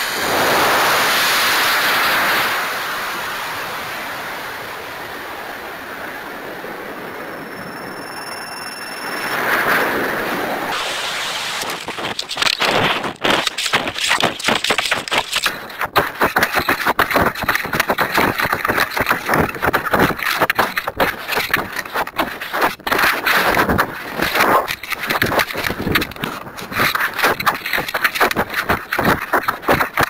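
Audio from a camera riding on a G72-powered model rocket: the motor lights with a loud rush of burning lasting about two and a half seconds, which fades as the rocket coasts, with a brief swell near ten seconds. From about twelve seconds on, choppy, buffeting wind rushes over the camera as the rocket falls fast with its parachute not fully deployed.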